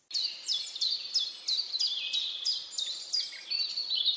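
A songbird singing a quick run of high chirps, each sliding downward in pitch, about four a second; it starts suddenly.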